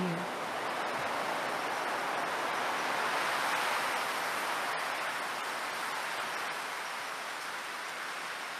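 Recorded rushing wind in a sound-art soundscape, an even airy rush that swells about halfway through and then eases off.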